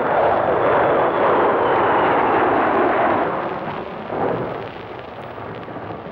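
Jet aircraft flying past overhead: a loud, even rushing engine noise with a faint high whine dropping slightly in pitch. The noise fades away over the last two seconds.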